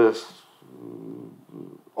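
A man's drawn-out hesitation 'yy' trailing off. It is followed by about a second of low, quiet, creaky humming in his voice before he resumes speaking near the end.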